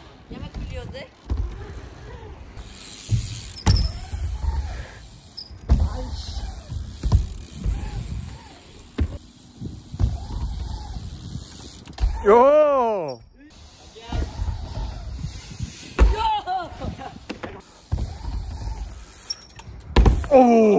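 BMX bike rolling over skatepark ramps, its tyres rumbling on the surface, with wind on the microphone and several sharp thuds of wheels hitting and landing on the ramps. A person gives one long, drawn-out shout a little past the middle.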